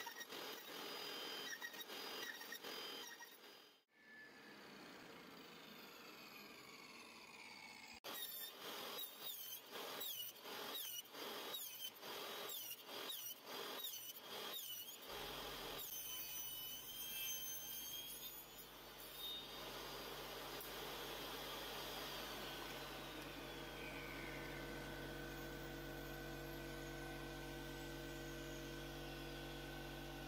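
Benchtop table saw starting about halfway through and running steadily while thin wooden strips are pushed through it. Before that comes a run of short repeated sounds about once a second.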